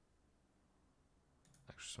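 Near silence, broken about a second and a half in by a few faint computer-mouse clicks, with a man's voice starting just before the end.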